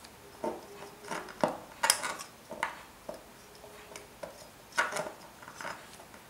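A metal ruler and a plastic disposable tattoo tube being handled against a tabletop: a string of light clicks and knocks, loudest about two seconds in and again near five seconds.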